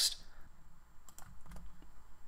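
A few faint, scattered computer keyboard keystrokes as text is entered into a form field.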